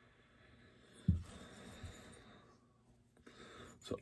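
Quiet room with a man's short low hum and a breathy exhale about a second in.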